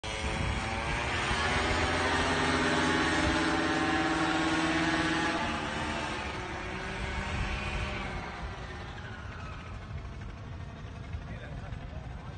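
Paramotor engine and propeller droning overhead, loud for about the first five seconds, then fading as the paramotor flies away.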